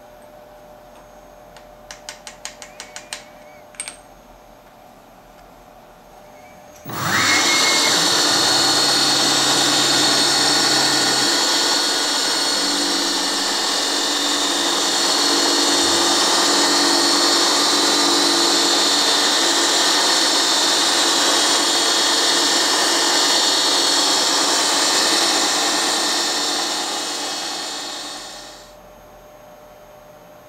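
About eight light taps two to four seconds in, then a milling machine spindle starts about seven seconds in and runs steadily with a high whine while a 25-degree single-lip carbide dovetail cutter cuts a small carbon-steel part. The spindle winds down near the end.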